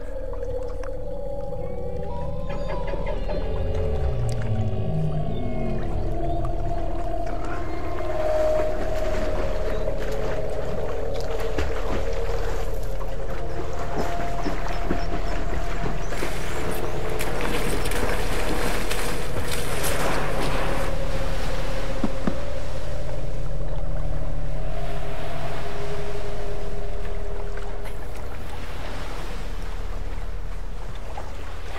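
Eerie film underscore: a steady low drone under held tones, with low tones sliding up and down in pitch a few seconds in. It slowly swells in loudness and eases off near the end.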